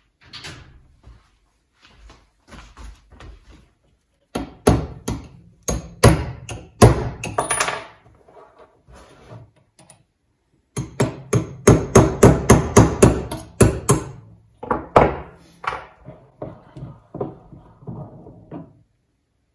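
Small metal hammer striking a steel pin set in a rotary table's four-jaw chuck, to break the chuck loose for removal. Sharp taps come in two runs, the second a quick, even series of about four a second, followed by a few lighter knocks.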